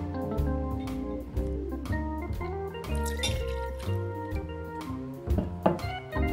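Background music, a plucked-string instrument over a steady bass line, with faint liquid pouring under it. Near the end comes a short, sharp knock.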